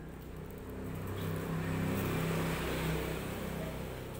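An engine passing by, growing louder to a peak about two to three seconds in, then easing off.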